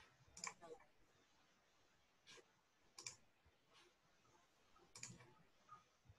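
Near silence broken by a few faint, scattered clicks, about six in all, the loudest about half a second, three seconds and five seconds in.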